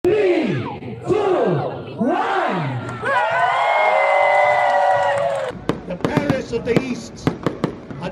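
Three loud shouted calls about a second apart, then one long held call from a voice over a crowd. About five and a half seconds in the sound cuts to a quick run of sharp firework pops and crackles.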